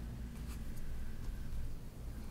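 Room tone from a meeting-room microphone: a steady low hum with a few faint small ticks in the first second or so.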